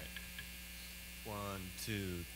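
Steady electrical mains hum from recording gear, with a quiet voice speaking or singing briefly about one and a half seconds in and again near the end.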